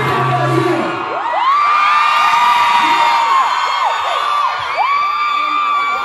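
A pop song's backing track ends about a second in, and a large crowd of fans goes on screaming and cheering, with many high-pitched voices overlapping.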